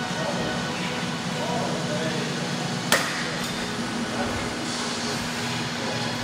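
A single sharp metallic clank of gym equipment about halfway through, over a steady room hum.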